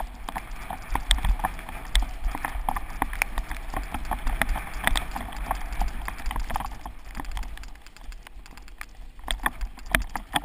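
A mountain bike rolling fast down a rough dirt singletrack, heard from the rider's own camera: a stream of irregular clicks, knocks and rattles as the bike goes over bumps, with a low wind rumble on the microphone. It eases off briefly about three quarters of the way through, then picks up again.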